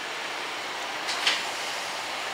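Steady background noise with no clear pitch, and a brief faint sound a little past a second in.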